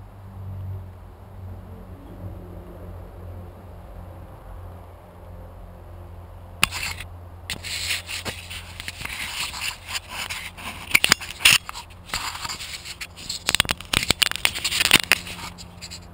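Handling noise on the camera: loud, irregular scraping and knocking from about seven seconds in. Before that, only a low steady hum.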